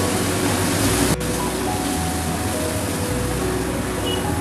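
Ground spices and whole spices sizzling in ghee in a nonstick wok as a spatula stirs them, under soft background music with held notes. There is a brief break in the sound about a second in.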